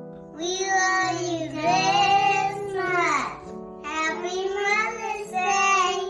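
A child singing over a soft piano accompaniment. The voice enters about half a second in, slides down in pitch around three seconds in, breaks off briefly, then carries on.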